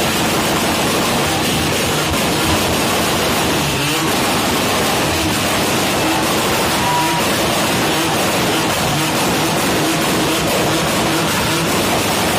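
A car doing a burnout: the engine is held at high revs while the drive wheels spin on the spot and throw up tyre smoke, making a loud, steady noise.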